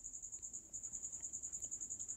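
Faint, high-pitched cricket chirping: an even trill pulsing about a dozen times a second.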